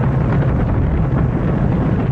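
Space Shuttle liftoff: the main engines and solid rocket boosters firing together, a loud, steady, deep rumble.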